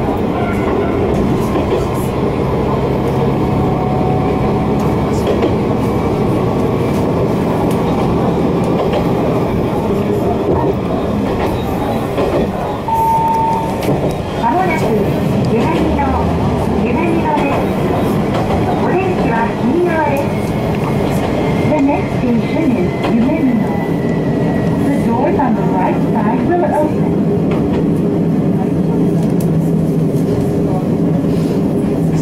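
Kanto Railway Joso Line diesel railcar running, heard from inside the car: the engine's steady drone under the rumble of the wheels on the rails. Voices can be heard in the car over it.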